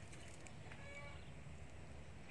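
Quiet outdoor background with one faint, short animal call about a second in.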